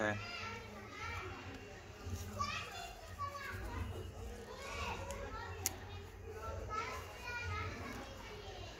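Children's voices in the background, talking and playing, over a steady low hum, with a single sharp click a little past the middle.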